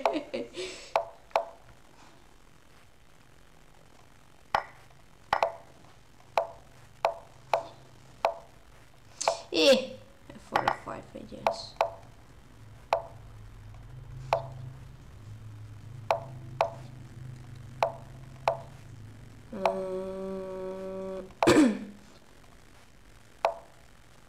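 Lichess chess-move sounds: a fast run of short wooden clicks, one every half second to second, as moves are played in a bullet game. A couple of brief wordless vocal sounds and, near the end, a held hum about two seconds long come between the clicks.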